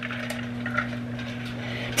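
Microwave oven running with a steady low hum.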